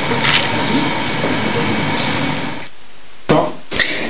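Steady background noise of the filming location, an even hiss-like haze with a faint hum, which cuts off about two and a half seconds in at an edit; two short clicks follow just before a man starts speaking.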